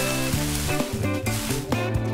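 Cartoon background music with a continuous rustling hiss laid over it, the sound effect of a tree's leaves being shaken; the rustling fades near the end.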